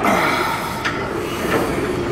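Plate-loaded chest press machine worked through a rep: a steady metallic rumble and rattle from the lever arms and loaded plates, with a short knock just under a second in.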